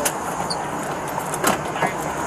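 Steady outdoor background noise of vehicles and traffic, with two light clicks or knocks in the second half.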